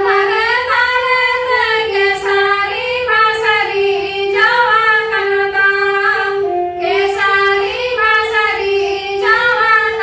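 Three women singing a Santali traditional dong song together, in phrases with pitch swooping up and down, over a steady held note.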